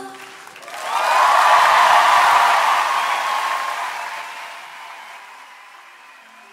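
Concert audience applauding with some cheering as a song ends, swelling about a second in and then slowly fading away.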